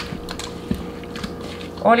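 Hands rubbing raw tilapia fillets into a wet garlic, parsley and lemon-juice marinade in a mixing bowl: soft squishing with a few light clicks.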